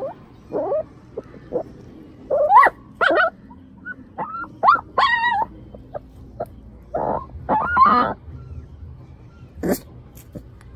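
Puppy trapped in a concrete drain pipe, whimpering and yelping in distress: about a dozen short high cries that rise and fall in pitch, some coming in quick pairs.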